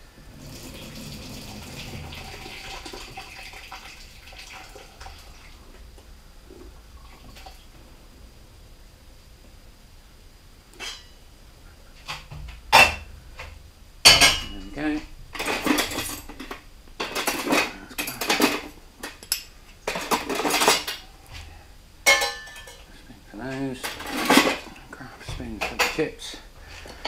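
A metal spoon clinking and scraping against a saucepan and a metal roasting tray of oven chips: a run of sharp clatters through the second half, after a softer steady noise at the start.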